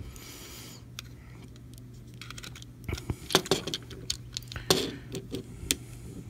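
Hard plastic parts of a transforming robot action figure clicking and ticking as its shoulder joints are rotated and flipped out by hand: a quiet first half, then a run of short sharp clicks in the second half.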